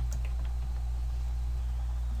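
Steady low electrical hum, with a few faint computer keyboard keystrokes at the start as the last letters of a search are typed and entered.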